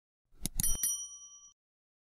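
Subscribe-button sound effect: a quick run of clicks followed by a short bell ding that rings out and fades within about a second.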